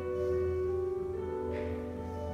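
A solo instrumental piece played live, in long held notes that stay steady rather than fading, with new notes coming in about a second in and again near the end.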